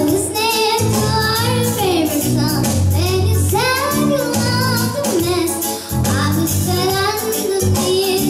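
A young girl singing a song into a microphone, holding notes with a wavering vibrato, accompanied by sustained chords on a Yamaha electronic keyboard.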